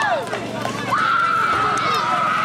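Girls' voices shouting and cheering, with one long, high-pitched held call starting about a second in.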